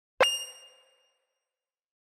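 A single bright metallic ding, an editing chime sound effect, struck about a fifth of a second in and ringing with several clear tones that fade within about half a second.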